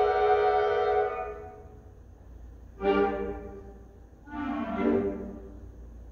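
Concert band of woodwinds and brass holding a full chord that is released about a second in and rings away in the hall. It then plays two short chords about a second and a half apart, each dying away.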